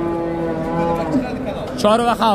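Cattle mooing: one long, level moo that stops about a second in, with a man's voice near the end.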